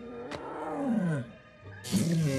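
A roar-like cry that slides down in pitch over about a second, with a short click just before it, over background music.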